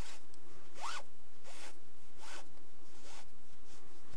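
Fluffy microfiber yarn pulled through two layers of a knitted coaster with a tapestry needle while whipstitching them together. It makes about five short zip-like rasps, one roughly every three-quarters of a second; the one about a second in rises in pitch.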